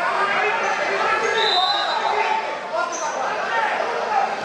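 Many overlapping voices talking and calling out, echoing in a large sports hall. Two brief high squeaks cut through, one about a second and a half in and another about three seconds in.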